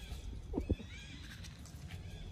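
Faint, short, high squeaks of a small animal, with two soft knocks about half a second in.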